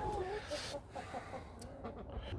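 Chickens clucking quietly: a few short, soft clucks.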